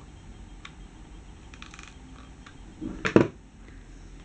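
Faint clicks and light handling sounds as a hot glue gun is applied and a crocheted flower is pressed onto a mug, with one brief, louder sound about three seconds in.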